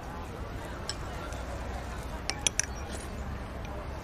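Eatery ambience: a steady low hum under faint background chatter, with a few light clinks of tableware, one about a second in and a quick cluster of three around the middle.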